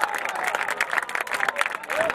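Football spectators clapping and calling out, with many sharp claps over a general crowd noise.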